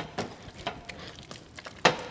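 A utensil knocking and scraping in a steel kadhai as eggplant bharta is mashed and fried. There are a few sharp knocks, the loudest near the end, over a faint hiss.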